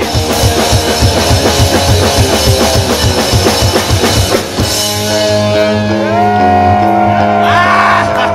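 Live punk rock band playing: fast drumming over guitar and bass, then about four and a half seconds in the drumming stops and sustained guitar and bass notes ring on, with a long held note over them near the end.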